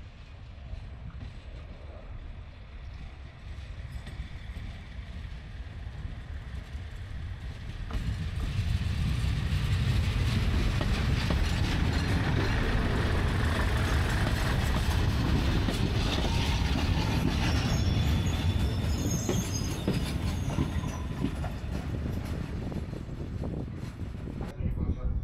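CP Class 450 diesel multiple unit running slowly into the station and past at close range: its diesel engine and wheels on the rails grow louder over the first several seconds, then run steadily loud before easing slightly near the end. Faint high squeals come in late on.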